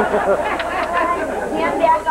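Voices of several people talking over one another, speech only.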